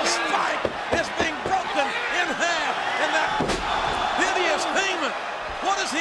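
Heavy thuds of bodies hitting a wrestling ring's mat, a few around a second in and the loudest about three and a half seconds in, under shouting voices and arena crowd noise.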